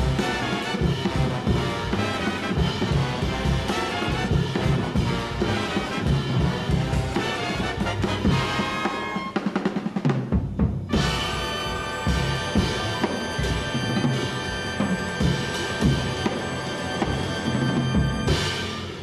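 Jazz big band playing loudly: brass and saxophones over a busy drum kit and cymbals. About nine seconds in, the drums play a quick roll and the band breaks off for a moment. Then it holds one long chord while the drums keep hitting under it.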